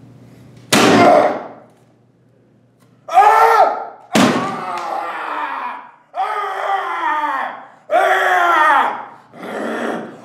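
A wooden desk being smashed: a loud crash about a second in and another about four seconds in. A man's yells follow, five of them, each falling in pitch.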